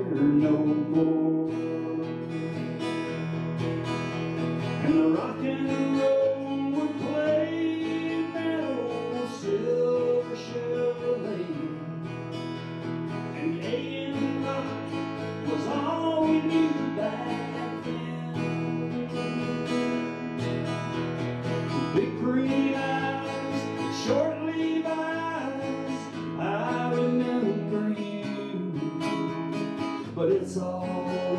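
Acoustic guitar strummed, with a higher melody line that slides and bends over the chords.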